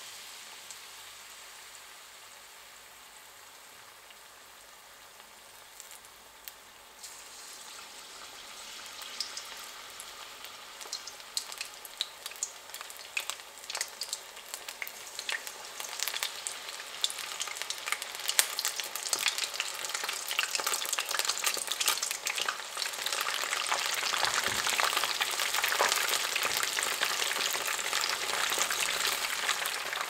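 Battered shrimp deep-frying in hot oil in a frying pan: a hissing sizzle full of fine crackles. It starts faint and grows steadily louder as more pieces go into the oil.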